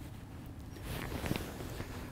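Faint rustling and handling noise from a camera being set onto a tripod head and a jacket moving, over quiet outdoor background.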